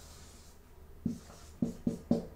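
Marker writing on a white board, its strokes making a soft hiss. Over it, a few plucked notes of background music come in from about a second in and are the loudest sound.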